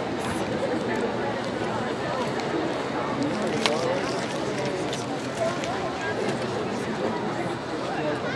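Crowd chatter in stadium stands: many voices talking at once, with one sharp crack a little over halfway through.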